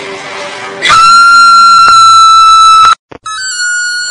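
Horror-trailer soundtrack: soft background music, then about a second in a sudden, very loud, steady high-pitched tone held for about two seconds that cuts off abruptly. After a brief silence, a second steady high tone starts, pitched a little higher.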